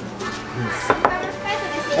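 A small ceramic plate set down on a wooden table: two sharp knocks in quick succession about a second in.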